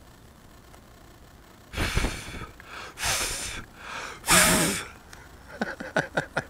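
A person close to the microphone breathing out hard three times, in loud breathy gasps or sighs about a second apart, the third with some voice in it. Short quick breaths follow near the end.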